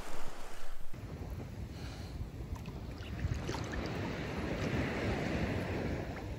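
Calm sea water lapping and sloshing close by, with wind rumbling on the microphone.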